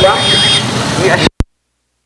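Voices and idling motorbike engines with a steady high-pitched whine, then the sound cuts off abruptly into dead silence just over a second in, broken only by one brief click.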